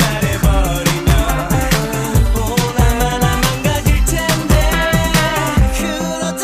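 Mid-1990s Korean dance-pop song: a sung verse over a steady drum beat and bass line.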